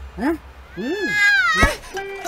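Cartoon cat character's voice: two short rising-and-falling vocal sounds, then a long high-pitched cry that falls in pitch, cut off by a sharp thump near the end.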